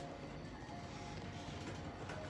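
Faint background music in a shop, with a low steady rumble of the store floor beneath it.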